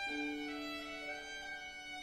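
Violin playing a slow passage: a new low note begins right at the start and is held steady.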